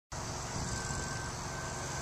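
Steady low rumble with an even hiss behind it: outdoor background noise.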